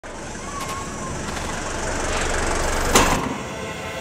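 A road vehicle approaching and passing: a rumble and rushing noise that builds steadily and peaks sharply about three seconds in, then falls away.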